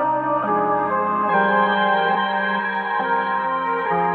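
A dark melodic loop playing: sustained keyboard chords that move to a new chord about every second.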